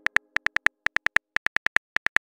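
Phone keyboard key-tap clicks: a quick run of short ticks of the same pitch, about six a second, one per letter as a text message is typed.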